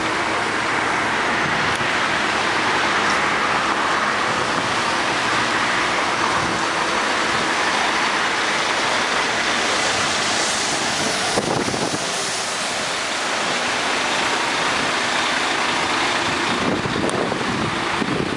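Steady street traffic on a wet road, a continuous noise with no let-up; a cement mixer truck drives past about ten seconds in.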